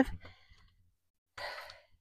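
A woman's short, breathy breath close to a clip-on microphone, about one and a half seconds in, after a moment of near silence.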